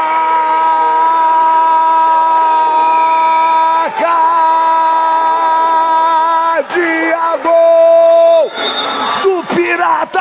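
A Portuguese-speaking football commentator's long held 'goooool' cry, marking a goal. He holds one steady pitch for about four seconds, breaks off briefly, holds it again for nearly three seconds, then gives a third, shorter held shout.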